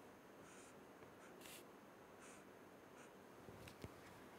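Faint strokes of a felt-tip marker drawing short arrows on paper: several separate scratchy strokes, with a light tap near the end.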